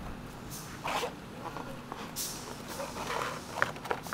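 Handling noise of wiring being tucked into the plastic frame of a car's cooling fan assembly: irregular rustles and scrapes of wire on plastic, then a few sharp clicks near the end, the loudest about three and a half seconds in.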